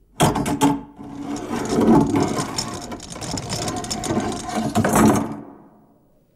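Sound effect of a heavy iron-studded door opening: a few sharp clanks, then about four seconds of mechanical rattling that fades out near the end.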